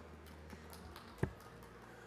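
Thin, scattered applause from a sparse crowd in a large hall, heard faintly. There is a single sharp knock a little after the middle.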